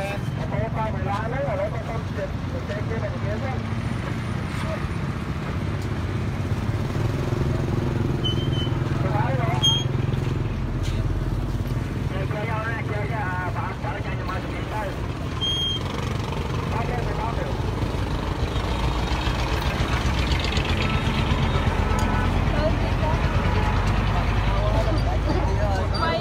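Several people talking among a crowd at the roadside, over steady traffic noise from passing vehicles that grows louder in the second half.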